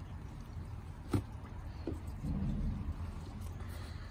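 Fabric cover being pulled back off the bedding of a plastic worm bin: soft handling and rustling over a low rumble, with a sharp click about a second in and a fainter one shortly after.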